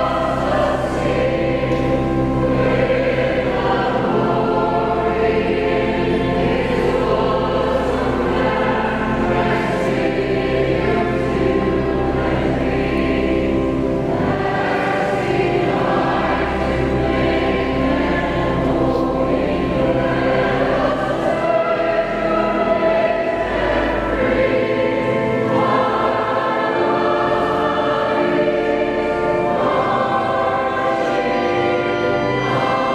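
A choir singing slow, sustained chords over a held low bass, the chords changing every few seconds.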